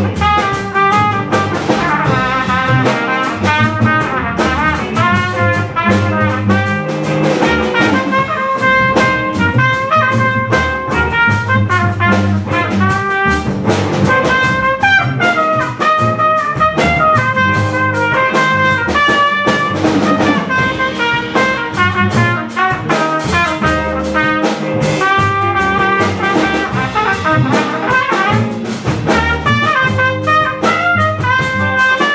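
A small jazz combo playing live, with trumpet, saxophone and trombone carrying the lines over a rhythm section of drum kit, bass and guitar.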